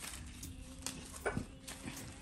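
A few light taps and rustles as artificial flower stems are handled and set into a small glass jar, over a faint steady hum.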